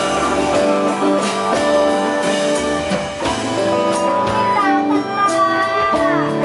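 Live acoustic band playing a song: a man singing over strummed acoustic guitar and hand drums.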